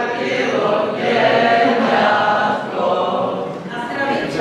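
A group of many voices singing together, with some notes held.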